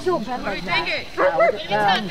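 Spectators' voices close to the microphone, talking, with several short high-pitched exclamations about a second in.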